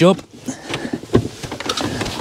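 Light rustling and soft knocks of hands working the plastic dash-top trim of a VW New Beetle, with one sharper knock a little over a second in.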